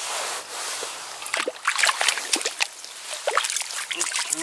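Water sloshing and splashing in a hole drilled in lake ice as a hand and a freshly caught trout move in it, with scattered sharp clicks and scrapes.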